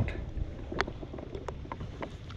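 Lake water splashing and dripping around a musky held at the surface beside a boat to revive it, with a few short sharp drips and slaps over a low steady rumble.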